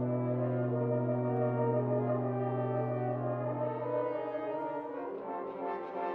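Nine French horns and a solo tuba playing a held brass chord with a strong low note for about four seconds. The chord then fades into softer, moving notes.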